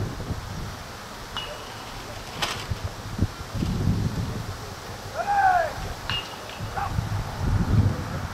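Wind rumbling on the microphone of an outdoor sports field, with a few faint clicks. About five seconds in there is a distant shout that rises and falls in pitch.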